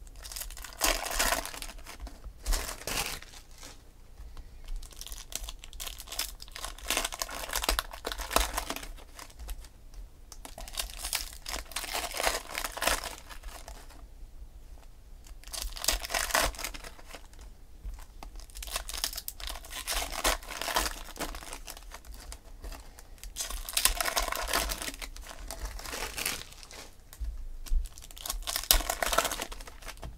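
Foil trading-card pack wrappers being torn open and crinkled by hand, in repeated crackling bouts of a second or two every few seconds.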